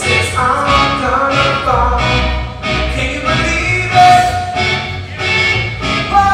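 Live band playing a song, sung vocals over instruments and a regular drum beat.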